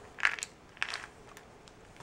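Small plastic candy packaging being handled in the hands: three short crinkly clicks about half a second apart, the first the loudest.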